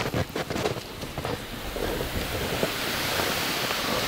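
Boots crunching on hard snow with a few distinct steps, then a steady hiss of snow and wind that builds over the last couple of seconds.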